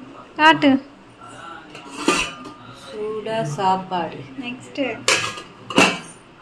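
Stainless steel plates and pot lids clinking and clattering as they are handled, with a sharp clank about two seconds in and two louder clanks near the end.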